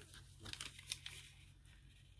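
Faint rustling and crinkling of tissue paper on a paper envelope as hands shift it and smooth it flat, with a few light crackles about half a second and a second in.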